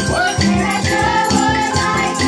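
A group of children singing together to strummed acoustic guitar, with hand drums and shakers keeping a steady beat.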